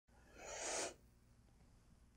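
A short, breathy vocal sound from a person, about half a second long, near the start.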